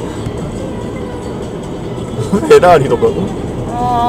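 Steady road and engine noise inside a moving car's cabin, with a short loud burst of a voice about two and a half seconds in and more talk starting near the end.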